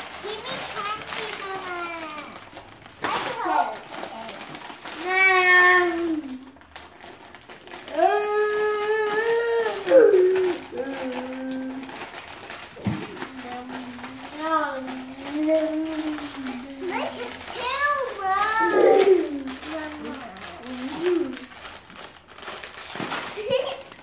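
Children's voices calling out and vocalising without clear words, over the crinkle of plastic Doritos bags being torn open and shaken out.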